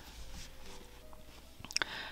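Faint handling of chunky yarn on metal knitting needles: soft rustling, with a couple of small clicks near the end.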